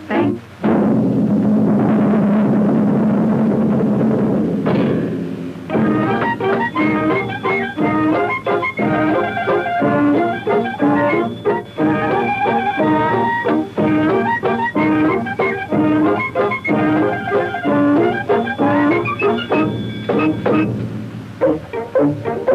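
Orchestral cartoon score with no singing: a sustained, dense passage for about the first five seconds, then lively music of many quick, short notes.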